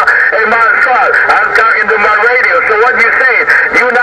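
Voices received over a Uniden HR2510 radio's speaker on 27.085 MHz, thin and narrow in tone and garbled past making out.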